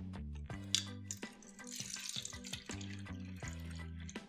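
Bottled water poured into a plastic cup, a splashing hiss through the middle, over background guitar music.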